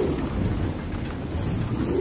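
A steady low rumble with a fainter hiss above it, with no clear separate events.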